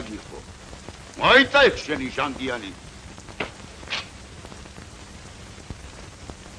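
A voice says a few words about a second in, over a steady background hiss like rain, with two faint clicks near the middle.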